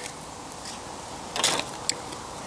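The plastic diffuser cover of an LED tube light being lifted off its aluminium back, handled in two short events: a brief scrape about one and a half seconds in and a light click near the end.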